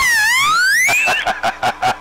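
Loud electronic sound effect over CB radio: a whistle-like tone that dips, then glides steadily upward for about a second, followed by rapid pulsing beeps at about seven a second.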